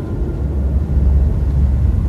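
Deep, steady low rumble from a film soundtrack's sound effects, swelling toward the end.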